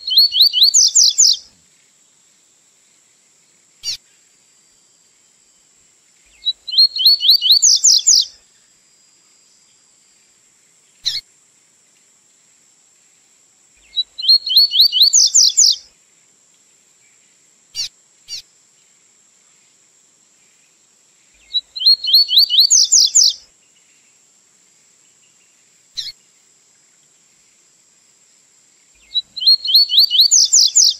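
Double-collared seedeater (coleiro) singing its 'tui-tui' song, on a tutor recording for teaching young birds the song. Each phrase is a fast run of rising whistled notes lasting about two seconds, and phrases come about every seven to eight seconds, five times, with single short chips between them. A faint steady high hiss runs underneath.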